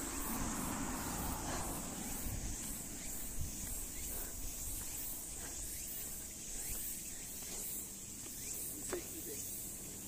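Insects chirring steadily in a high, evenly pulsing drone over a low rumble, with a brief short vocal sound near the end.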